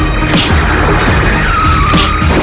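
A tyre-screech skid sound effect, a wavering squeal that comes in near the end, over background music with a steady beat about twice a second.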